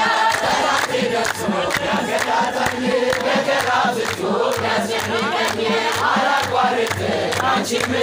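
A crowd of men and women singing an Ethiopian Orthodox Tewahedo mezmur (hymn) together, with rhythmic hand clapping.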